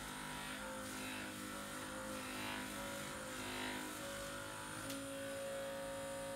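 Muscle Hammer Classic percussion massage gun running on high against the thigh muscle: a steady motor hum whose pitch shifts slightly now and then.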